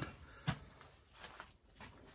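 Quiet, with a few faint clicks and taps. The sharpest comes about half a second in.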